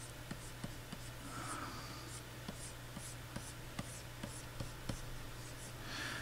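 Plastic stylus tip scratching and tapping on the drawing surface of a Wacom Cintiq 22HD pen display in short sketching strokes, quiet, over a steady low hum.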